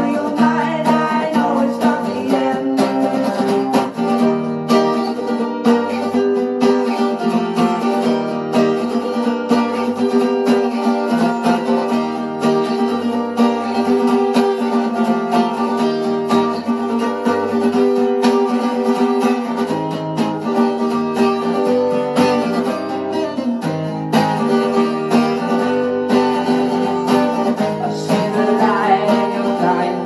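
Acoustic guitar strummed in a steady rhythm, playing sustained chords of a song.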